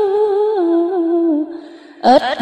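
A voice chanting Vietnamese verse holds the drawn-out final note of a line, wavering and stepping down in pitch, then fades out about a second and a half in.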